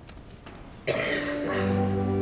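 Pipe organ starting to play about a second in: a sudden loud chord, then steady held notes over a sustained bass. Before it, quiet room tone.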